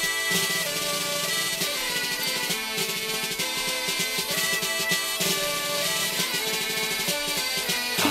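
Instrumental passage of a French progressive folk-rock song: a band playing a lively melody over a steady rhythm, with no singing.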